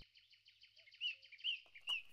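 Faint bird calls: three short chirps about half a second apart over a thin, steady twittering, with little else.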